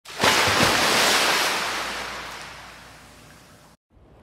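A wave breaking and washing back: a rush of surf noise that comes in suddenly, then fades away over about three seconds and cuts off just before the end.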